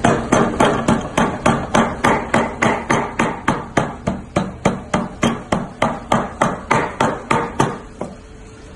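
Large cleaver chopping raw meat on a wooden chopping block, hand-mincing it: an even run of sharp chops, about three a second, that stops just before the end.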